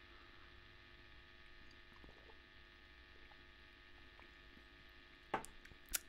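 Near silence: faint steady hum, with a few faint ticks and one short sharp sound near the end.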